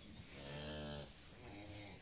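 A calf mooing low: one short moo, then a second, fainter one just after.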